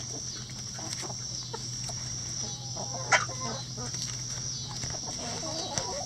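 A backyard flock of hens clucking as they forage, short scattered calls from several birds. A steady high-pitched drone and a low hum sit underneath, and a single sharp click stands out about three seconds in.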